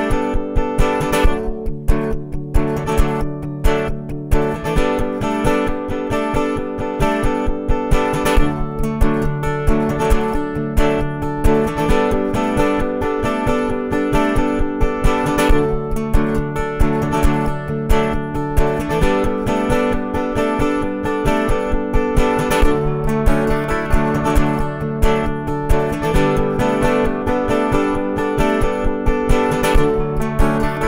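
Solo acoustic guitar played with a steady, fast strummed rhythm, the chords changing every few seconds: the instrumental opening of a pop/folk song, with no singing yet.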